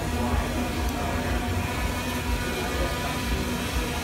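Steady hum of an Intel Falcon 8+ eight-rotor drone hovering, mixed with the noise and background music of a busy exhibition hall.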